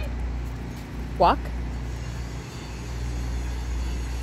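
Steady low rumble of downtown traffic noise outdoors, with a woman giving one short spoken command about a second in.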